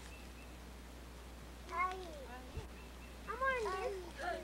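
A young child's high-pitched, wordless calls: a short one about two seconds in and a quick run of rising-and-falling cries near the end.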